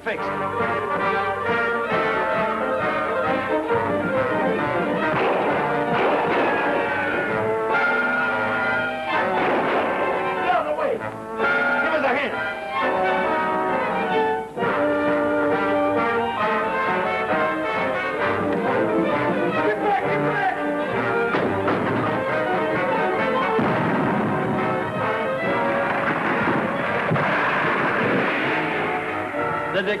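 Dramatic orchestral film score with prominent brass, playing continuously with many moving notes.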